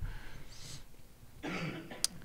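A person's short cough about one and a half seconds in, after a faint breath.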